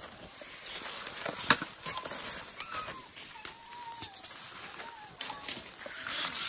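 A hand trigger spray bottle squirting herbicide onto freshly cut stems, with clicks and leaf rustling from the work; one sharp click comes about a second and a half in. A faint thin whistle glides up and down in the middle.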